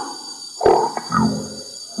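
Experimental electronic music from a DJ mix: stuttering, distorted bursts with a deep low rumble under them. The bursts start suddenly, the loudest a little over half a second in and again near the end, over a faint steady high whine.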